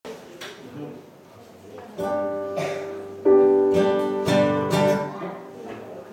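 Accordion, acoustic guitar and digital piano playing an instrumental tune together. It starts quietly, held chords come in about two seconds in, and a louder full-band entry follows just after three seconds before easing off.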